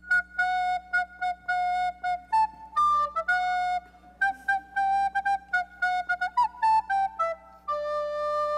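A recorder playing a short tune: a quick run of separate tongued notes stepping up and down in pitch, ending on a held note.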